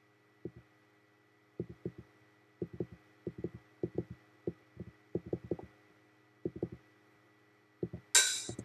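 A computer mouse clicking: short, dull, low taps, mostly in quick pairs and triples like double-clicks, over a faint steady hum.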